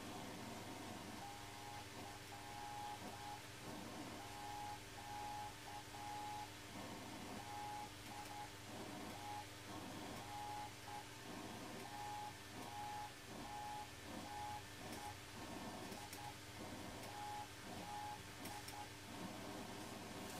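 Morse code from the Michigan Mighty Mite, a half-watt crystal-controlled CW transmitter on the 3.579 MHz colour-burst crystal, as received and played by a Flex-5000A receiver. A single beep tone keys on and off in dots and dashes, with a low hum beneath it.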